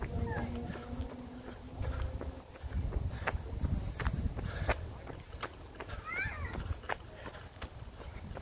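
Footsteps on a paved path at a walking pace, a sharp step landing about every two-thirds of a second, with wind rumbling on a hand-held phone's microphone. A short held vocal hum at the start.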